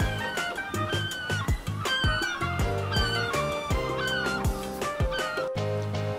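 Background music with a drum beat, held low notes and a bright melodic line.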